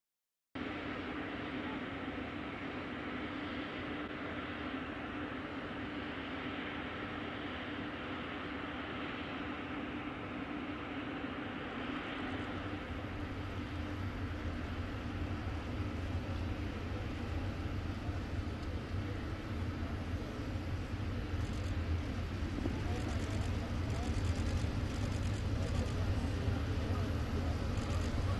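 Steady drone of aircraft on an airport apron, with a deeper rumble building in about halfway through and growing slowly louder, under indistinct talking.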